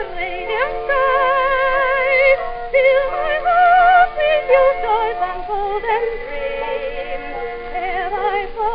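Old acoustic-era record of a soprano singing high, sustained notes with a wide vibrato over instrumental accompaniment.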